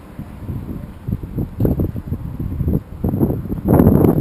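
Wind buffeting the microphone in uneven low gusts, loudest near the end.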